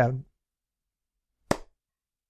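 A male narrator's voice trailing off on the end of a word, then dead silence broken once by a single short click about a second and a half in.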